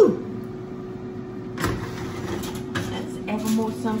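Metal oven rack and a foil-covered baking dish clattering as the dish is taken out of the oven: one sharp clatter a little under two seconds in, then a few lighter knocks. A steady low hum runs underneath, and a woman's voice is heard briefly at the start and near the end.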